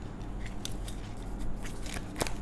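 A tarot card being drawn from the deck and laid on the table: a few light clicks and rustles of card over a steady low hum.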